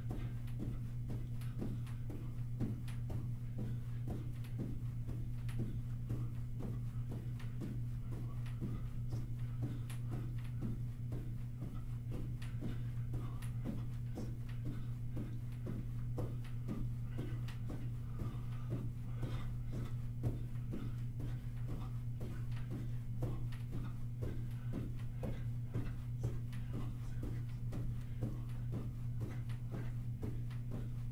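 Jumping jacks: sneakers landing on a carpeted floor in a steady, even rhythm of soft thuds. A constant low hum runs underneath.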